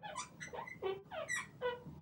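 A marker pen squeaking on a writing board as a word is written: a run of about eight short, high squeaks, most sliding down in pitch.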